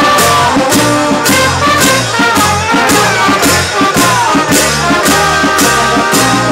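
Live brass band playing an upbeat tune: trumpets and trombones over a steady drum beat of about two strokes a second and a walking bass line.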